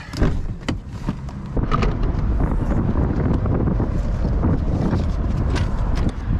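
Car door latch clicking open just after the start, followed by a steady noisy rumble with a few scattered clicks and knocks as things are handled in the car.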